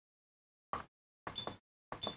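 A few short, faint taps about half a second apart as front-panel keys on a Datascope Spectrum OR patient monitor are pressed. The later presses carry a short, high key beep from the monitor.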